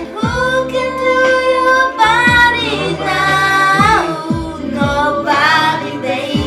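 R&B song: a woman's voice singing long held, gliding wordless notes over a backing track with a deep kick drum whose thuds drop in pitch.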